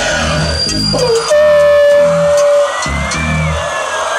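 Hip hop backing beat played loud over a club PA, with repeating bass pulses. About a second in, a long held tone comes in for over a second and is the loudest part, followed by a few gliding tones.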